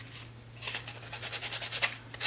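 Hand sanding: a folded scrap of sandpaper rubbed quickly back and forth over the edges of a painted wooden block, wearing the paint down to distress it. The strokes are soft at first, then turn into a fast scratchy rasp of several strokes a second from about half a second in.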